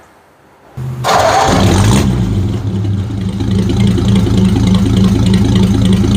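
A vehicle engine starting about a second in, with a short loud burst as it catches, then settling into a steady idle.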